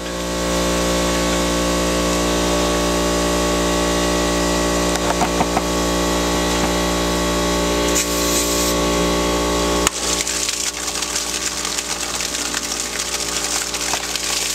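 Small air compressor running with a steady hum that drives a homemade PVC pneumatic displacement pump. About ten seconds in, the sound changes suddenly to a rapid crackling sputter as water and air spurt out of the top of the pump's six-foot discharge pipe.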